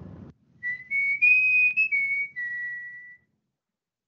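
A short whistled tune of about six notes that rises and then falls back to a longer held last note: the intro jingle of the pronunciation video.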